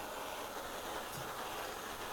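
Borde self-pressurising petrol stove burning at a high setting, giving an even, steady rushing noise.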